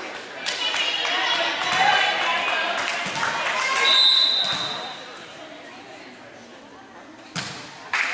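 Spectators chattering in a gymnasium, then one short referee's whistle blast about halfway through to signal the serve. Near the end a volleyball is struck sharply, the serve, with a second hit just after it.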